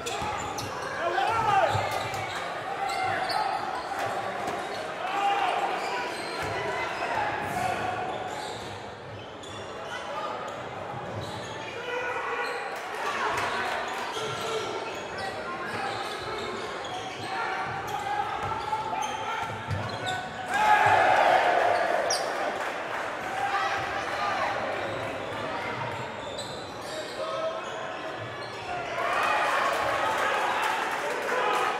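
Live game sound in a large gym: a basketball bouncing on a hardwood court amid indistinct spectator chatter and shouts. About two-thirds of the way in, the voices briefly rise louder.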